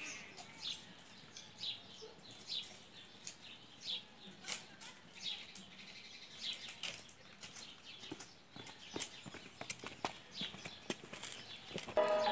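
A bird calling over and over in short, falling chirps, roughly one or two a second, with scattered faint clicks.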